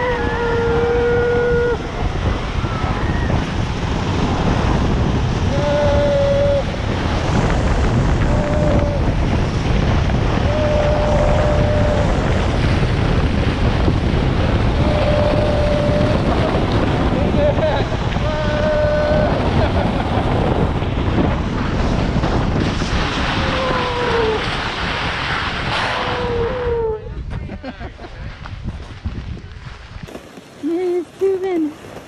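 Snow tubes sliding fast down a groomed snow lane: a loud, steady rush of wind on the microphone and tube-on-snow hiss, with a few short held calls from a rider's voice over it. The rush dies away near the end as the tubes slow to a stop.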